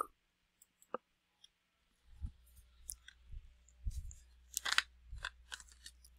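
Scattered light clicks, taps and handling knocks from a computer mouse being clicked and a water bottle being picked up, most of them from about two seconds in.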